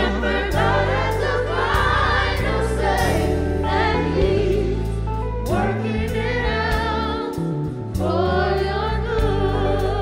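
Gospel choir and congregation singing a worship song over band accompaniment, with steady bass notes and regular drum hits.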